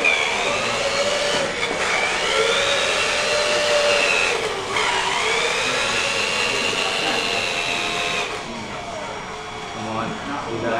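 Small electric drive motors of a wheeled robot whining, the pitch sliding up and down as the robot speeds up, slows and turns; the whine breaks off briefly twice.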